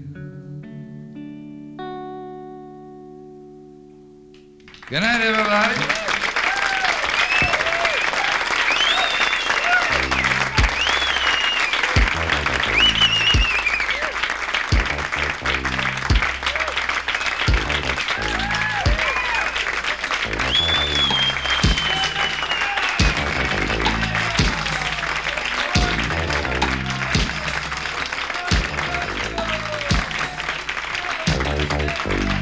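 The last chord of a song rings out and fades. About five seconds in, audience applause and cheering with whoops breaks out suddenly. A few seconds later a low, steady musical beat starts up under the applause.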